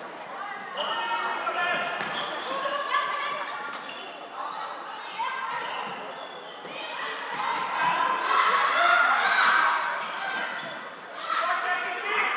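Floorball game sounds in a sports hall: sharp clacks of sticks on the plastic ball and court, under players' and spectators' shouting that grows louder about seven seconds in.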